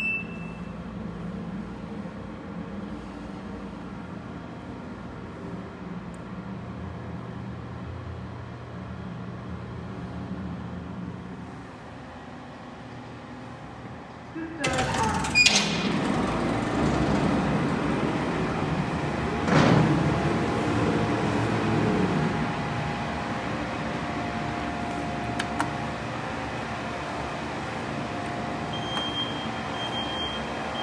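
Freight car elevator running with a steady hum, which drops a little about 12 seconds in. About 15 seconds in a loud mechanical rumble and rattle begins with a brief squeal, and there is a heavy thump a few seconds later as the car's doors and mesh gate move; the louder rumble carries on, and a short electronic beep sounds near the end.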